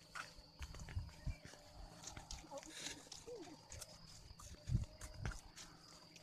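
Faint outdoor ambience on a walk along a dirt path: a steady high insect drone, with a few low thumps from footsteps and the handheld phone moving, about a second in and twice near the end.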